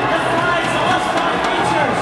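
Spectators shouting and cheering, many voices overlapping in a steady, loud din under an indoor arena's echo.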